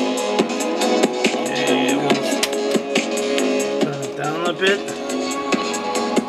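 A CD playing through the Sony CFD-S01 portable boombox's built-in speakers: a song with a steady drum beat and held notes, with a wavering voice-like line near the end.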